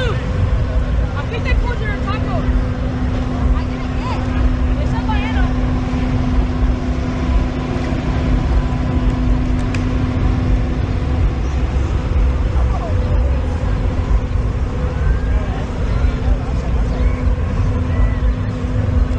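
Outdoor fairground ambience: scattered voices of people around, mostly in the first few seconds, over a constant low rumble and a steady hum that fades about eleven seconds in and returns near the end.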